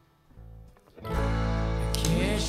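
Live country-rock band music: after a brief near-silent pause, the band comes back in about a second in with guitars, bass and drums playing at full level.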